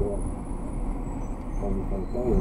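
Steady low road rumble of a car driving in city traffic, heard from inside the cabin, under a short pause in a conversation; a man's voice starts again near the end.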